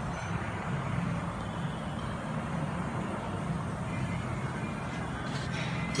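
Heavy diesel truck engine idling with a steady low rumble.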